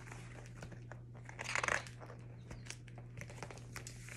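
Pages of a picture book being handled and turned: paper rustling and crinkling, loudest about a second and a half in, with small scattered clicks.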